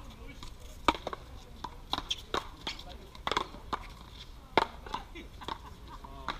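Paddleball rally: a ball repeatedly smacked by paddles and slapping off the concrete wall, a dozen or so sharp cracks at uneven intervals. The loudest come about a second in and again about four and a half seconds in.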